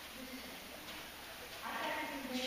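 A person's voice: a faint short sound just after the start, then a drawn-out vowel beginning about one and a half seconds in, over quiet room sound.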